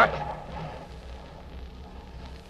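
Radio-drama battle sound effects: a steady rumble of distant gunfire and explosions with no single loud blast, over the old recording's hiss and low hum.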